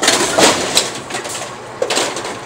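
Brunswick bowling pinsetter cycling: a burst of metallic clatter at the start, then a few sharp clicks and knocks over a steady machine hum.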